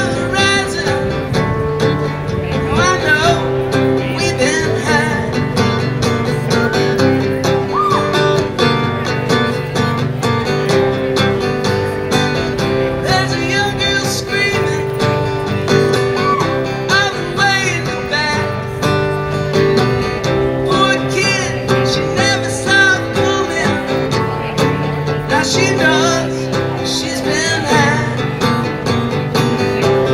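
Solo acoustic guitar strummed in a steady rhythm: the instrumental intro to the song, played live.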